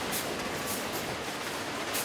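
Optical sorter's air jets giving a quick series of short hissing puffs as they blow HDPE bottles off the end of the conveyor, over the steady running noise of the sorting-line machinery.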